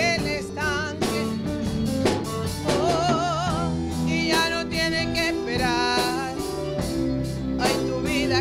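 Live worship band playing: a woman sings a melody with wide vibrato over electric guitar, drum kit and keyboard.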